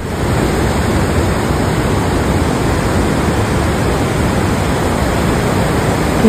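Parvati River rapids rushing over boulders: a steady, loud wash of fast whitewater.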